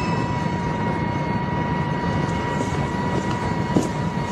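Tank engine running with a steady low rumble and a thin, steady high tone over it.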